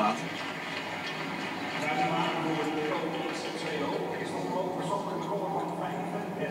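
Indistinct background voices and rink ambience from a speed-skating television broadcast, heard through a TV set's speaker, with a low steady hum underneath.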